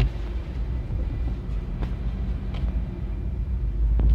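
Steady low rumble of a moving car's engine and tyres, heard from inside the cabin, with a couple of faint clicks.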